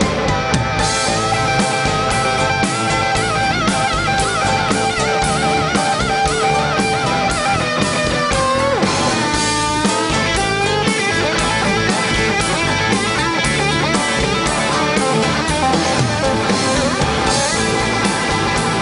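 Live rock band: a Telecaster-style electric guitar plays a lead line over a drum kit. A long held note wavers in pitch a few seconds in, then slides down about halfway through.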